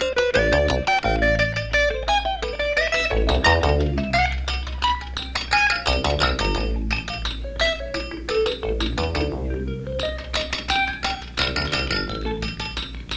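Instrumental live band music: quick plucked guitar notes over a steady bass line.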